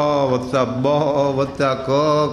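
A man's voice chanting a line of verse into a microphone in long, held melodic notes, with short breaks between phrases.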